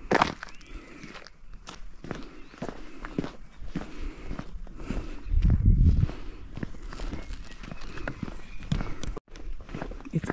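Footsteps of a walker on a paved road, a steady run of steps about two to three a second. A low rumble comes about five seconds in, and the sound drops out briefly near the end.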